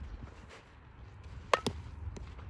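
A softball struck by a bat for a fielding-drill ground ball: a sharp crack with a brief metallic ring about one and a half seconds in, followed closely by a second knock.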